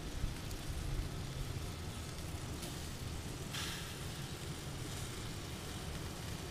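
Hot dogs and sausages sizzling on a gas grill: a steady hiss with a low rumble underneath.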